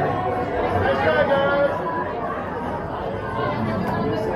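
Several people talking at once, an indistinct chatter of voices among the riders in a roller coaster train.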